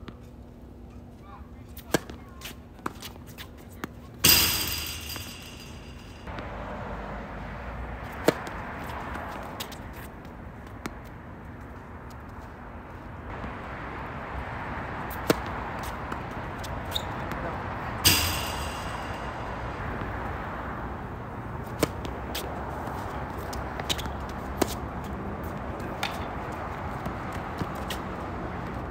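Tennis ball being struck by rackets and bouncing on a hard court during rallies: scattered sharp single knocks several seconds apart, with two louder cracks, each followed by a short ring, about four seconds in and near the middle. A steady background rush of noise underlies them.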